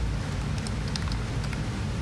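Steady background hum and hiss with a few faint, light clicks scattered through it.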